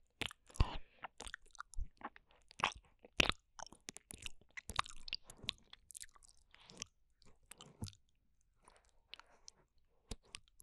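Wet mouth sounds of licking and lip smacking directly on the silicone ear of a binaural microphone: irregular sharp clicks and smacks, with a short lull about eight seconds in.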